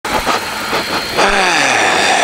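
Honda ST1300 Pan European V4 motorcycle riding at about 100 km/h: steady wind and engine noise, with a tone that falls in pitch from just past a second in.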